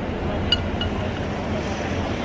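Steady city street background, a low traffic rumble, with two short high pings about half a second in.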